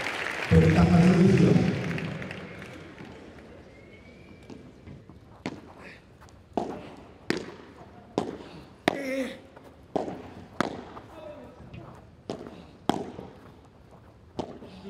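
Applause and a loud voice dying away. After a few seconds, a padel rally starts: about nine sharp hits as the ball is struck back and forth, spaced roughly a second apart.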